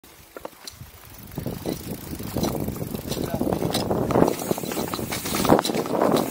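Mountain bike rolling fast down a dirt trail: a rushing noise of knobby tyres on dirt that grows louder over the first couple of seconds as speed builds, with scattered clicks and knocks from the bike rattling.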